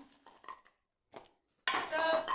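Small plastic pieces clicking and rattling in a clear plastic tub: a few faint light clicks, then a louder rattling clatter near the end.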